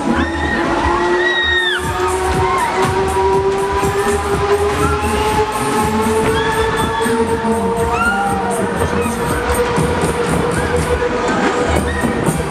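Loud dance music from a fairground ride's sound system, with a steady bass beat and a long tone slowly rising in pitch, while riders scream over it.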